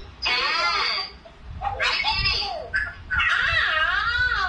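High-pitched young child's voice in three drawn-out, wavering phrases of about a second each, with short pauses between them.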